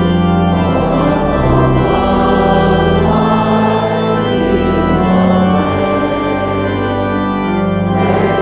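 Church organ playing a hymn as the congregation sings along, sustained chords changing every second or so.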